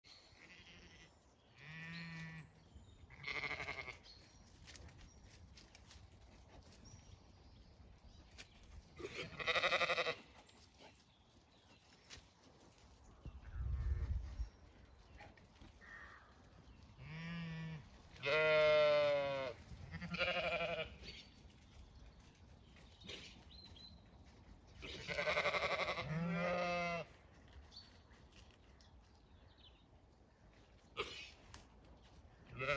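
A flock of Zwartbles sheep bleating, about eight separate calls a few seconds apart. Some calls are short and deep, others longer and higher. A brief low rumble comes about halfway through.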